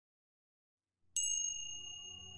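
About a second in, a single high bell-like chime is struck and rings on, fading slowly, as a soft low drone of ambient music starts beneath it.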